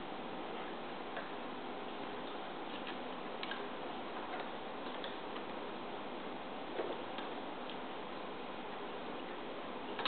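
Faint, scattered small clicks and taps of a copper wire link being worked by hand into a connector on plastic tubing, over a steady background hiss, with one slightly louder click about two-thirds of the way through.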